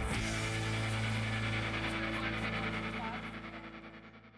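Background music: a chord struck at the start and held, fading out toward the end.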